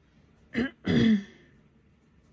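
A woman clearing her throat in two bursts, a short one about half a second in and a longer one right after.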